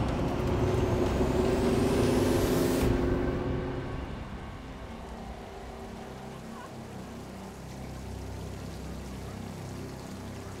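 Road noise from a vehicle driving on a highway, with a rising hiss that cuts off abruptly about three seconds in. After that comes a much quieter steady background.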